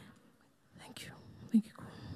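Quiet whispered speech, with a brief voiced murmur about one and a half seconds in.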